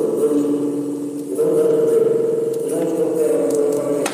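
Circuit-bent toy figure played through a spring reverb tank: a droning, glitchy electronic tone that jumps to a new pitch about a second and a half in and again near three seconds as a hand touches the figure.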